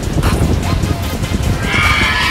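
Background music, with a harsh, raspy creature screech beginning about one and a half seconds in and running on past the end: a pterosaur call sound effect.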